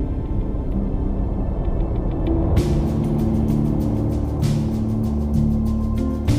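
Instrumental background music of sustained, calm tones; about two and a half seconds in, a quick, evenly repeated percussive beat comes in over it.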